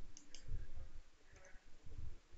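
Two quick computer-keyboard key clicks shortly after the start, about a fifth of a second apart, then a fainter click in the second half, all quiet.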